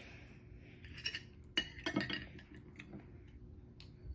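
A handful of light clinks and taps from a table knife on a plate and a glass hot-sauce bottle being picked up, the sharpest a little after a second and a half in.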